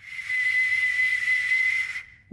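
An ancient bronze whistling arrowhead blown by mouth: one steady whistle lasting about two seconds, with strong breathy hiss.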